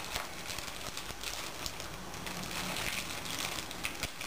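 Faint rustling and crinkling of paper and plastic wrappers being handled, in small irregular bursts.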